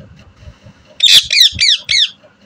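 Rose-ringed parakeet (Indian ringneck parrot) giving a quick string of four high-pitched calls about a second in, each note falling in pitch.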